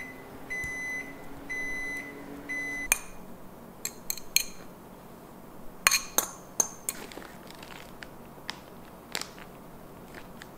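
An appliance beeps four times, about once a second, over a low hum that stops with the last beep about three seconds in. After that come sharp clinks of a spoon against a ceramic bowl as ground beef is scraped out onto a tortilla, the loudest a few seconds later.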